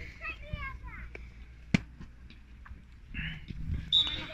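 Faint voices of players and bystanders around an outdoor beach volleyball court between rallies, with a single sharp knock a little under two seconds in and a few softer taps.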